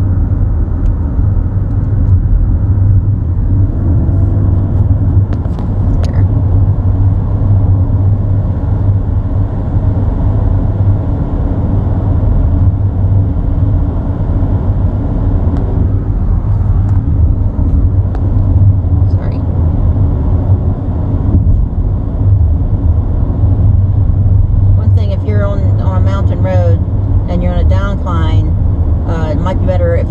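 Steady low rumble of a van's engine and tyres heard from inside the cabin while driving along a road.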